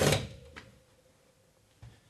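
A battery drill driving a screw through a shelf support bracket into the wall stops right at the start with a brief loud burst that fades within half a second. After that it is quiet apart from a faint click and a short knock near the end.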